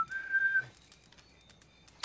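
A person whistling: quick notes stepping up in pitch, ending on one held high note that stops about half a second in. Faint small clicks follow.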